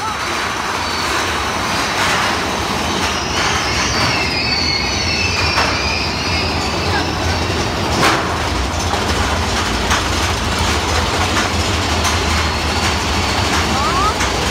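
Big Thunder Mountain Railroad mine-train roller coaster running along its track, heard from on board: a loud, steady noisy rush over a low rumble.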